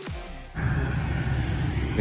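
Electronic background music ends on a falling sweep; about half a second in it gives way to a steady low hum of the ramp.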